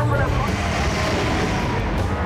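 Steady, noisy din of a crowd on a busy street, with indistinct voices mixed into it. A low hum fades out within the first half second.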